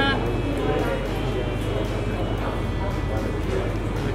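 Steady low electrical hum under a background hiss, with faint music.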